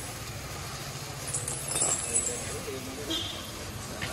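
A motor scooter engine running steadily, with light metallic clinks from an elephant's leg chains as it walks.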